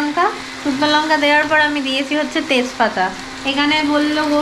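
Oil sizzling in a frying pan on a stove, under a woman talking in short phrases, her voice the louder of the two.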